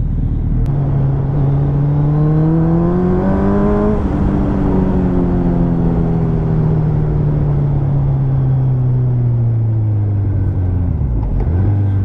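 Suzuki Hayabusa's inline-four engine accelerating, its pitch rising for about three seconds. The revs then fall slowly over the next several seconds as the throttle eases, with a short dip near the end before it steadies at a lower pitch.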